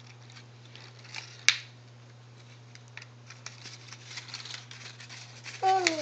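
Faint rustling and light crinkling of a construction-paper chain link as small fingers tug at it, with one sharp click about a second and a half in, the loudest sound.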